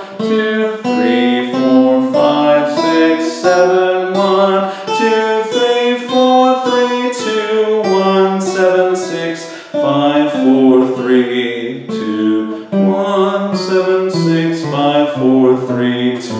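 Acoustic guitar picking a movable D-shape major scale note by note, up and back down. Because it starts on the second degree, it sounds as the Dorian mode, which sounds "a little funny." A man's voice sings the scale numbers along with the notes.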